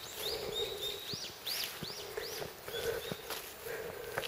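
A songbird singing a run of high whistled notes, some held flat and several sweeping up and back down, over a steady low background hum, with a few faint footsteps.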